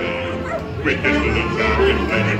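Ride soundtrack of the animatronic pirate band singing a sea-shanty-style song with squeezebox and plucked strings, while the animatronic dog barks along in short yaps.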